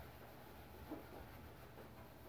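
Faint scrubbing and rubbing at a stainless steel kitchen sink, barely above room tone.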